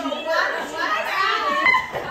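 Several women's voices talking over one another, lively chatter in a room, with no single voice clear.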